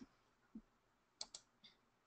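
Near silence with a few faint clicks: a soft knock about half a second in, then two sharp clicks in quick succession and a fainter one.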